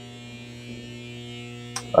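Steady electrical mains hum, a low buzz that holds one pitch, with a single sharp click near the end.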